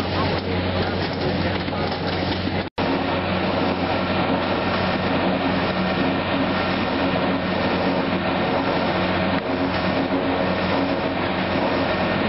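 Sugar-beet processing machinery running steadily, a beet conveyor and a beet-mashing machine with a constant engine-like hum. The sound cuts out for an instant about three seconds in, then carries on unchanged.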